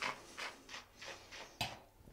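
Faint wet mouth sounds of red wine being worked around the mouth while tasting: a string of short clicks and sucking noises. A light knock near the end as the wine glass is set down on the table.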